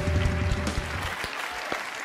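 Applause breaking out suddenly and thinning after about a second, with the last low notes of the theme music ending under it.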